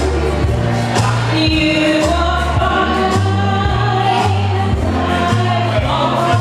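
Karaoke backing track with a bass line stepping from note to note, and a voice singing along over it.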